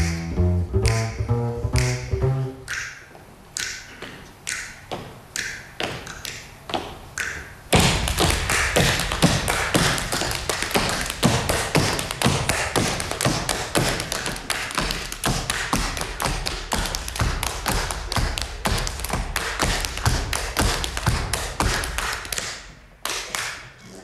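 Tap dancing by two dancers on a wooden stage floor. It begins as single taps, about two a second, while string music dies away in the first couple of seconds. Then, about eight seconds in, it breaks into a fast, dense run of taps that stops about a second and a half before the end.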